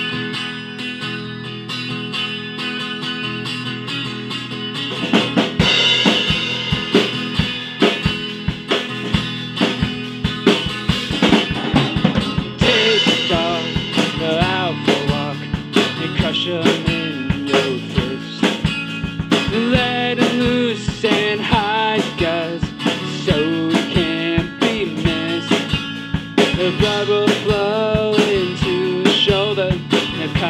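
Rock trio of guitar, bass guitar and drum kit playing a song together; guitar chords ring at first, and the drums come in about five seconds in with a steady beat.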